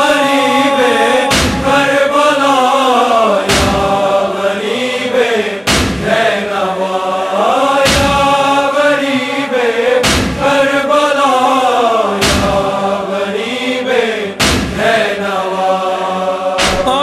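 Nauha refrain chanted in a slow lament melody, with a deep thump about every two seconds keeping the beat.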